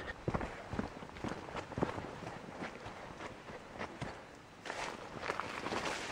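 Footsteps walking along a dirt forest trail, soft and irregular, several a second. Near the end, leafy brush rustles against the walker.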